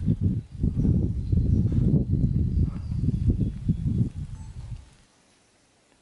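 Loud, irregular low rumbling and buffeting on the camera microphone, which stops abruptly about five seconds in.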